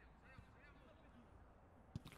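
Near silence, with a few faint, short high-pitched calls early on and one faint click just before the end.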